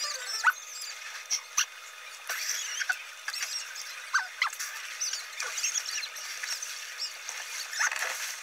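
Fast-forwarded room sound: a string of short, high-pitched chirps and squeaks gliding up and down, with a few sharp clicks.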